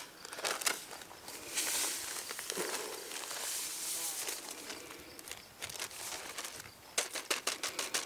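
Plastic zip-top bag crinkling as a cinnamon-sugar mix is shaken out of it into a pot of sliced apples: a soft steady hiss through the middle, then a quick run of crackles near the end.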